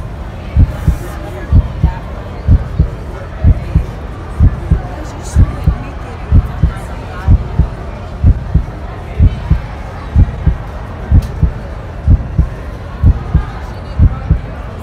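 A heartbeat sound effect: a steady run of deep thuds, about two a second, laid over the scene, with faint talk beneath it.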